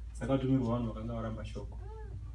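A man's voice talking briefly, then near the end a short, high vocal cry that rises and falls in pitch.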